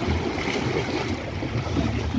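Swimming-pool water sloshing and lapping as children swim and float, with wind buffeting the microphone in a steady low rumble.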